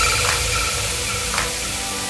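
Electronic transition sound effect: a loud static hiss with steady synth tones under it, slowly fading, with a few faint glitchy flicks.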